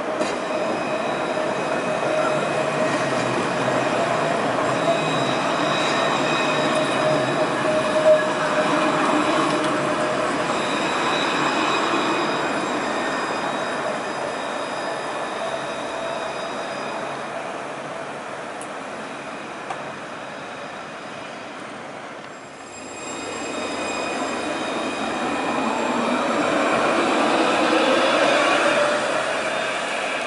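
Trams rolling through a curve with steel wheels squealing on the rails, making held high-pitched tones over the rumble. After a short dip, another tram approaches with a whine that rises in pitch and grows louder, peaking near the end.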